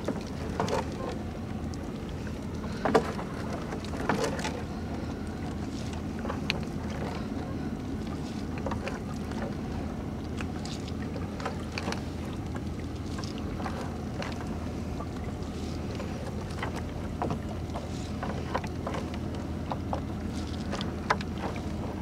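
A gill net being hauled by hand out of the river over the side of a small wooden boat, with intermittent splashes and dripping water as the wet mesh comes aboard. Under it runs a steady low hum.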